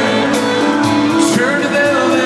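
Live country concert music heard from the crowd in an arena: a singer holding long, sliding notes over a band with guitar and cymbals, loud and steady.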